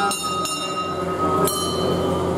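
A small metal puja bell struck about three times, each strike ringing on with a bright, high, lingering tone, over a steady low hum.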